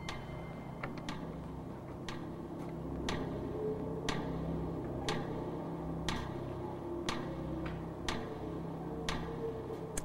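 Game show countdown cue: a clock-like tick about once a second over a low, steady synthesizer drone, marking the 30-second answer clock running.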